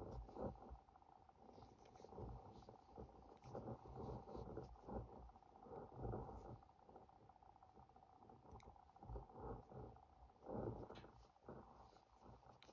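Faint, irregular rustling and scuffing of yarn and a crochet hook being worked through chain stitches, fingers handling the work close to the microphone.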